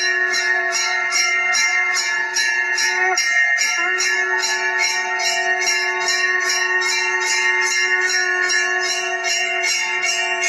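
Temple bell rung rapidly and evenly, about three strokes a second, during an aarti lamp offering, over a steady sustained tone that breaks off briefly about three seconds in.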